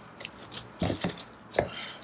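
Dough being worked and folded by a gloved hand on a stainless steel worktop: a few short slaps and squishes, clustered around a second in and again a little later.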